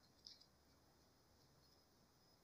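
Near silence: room tone, with one faint short tick about a quarter second in.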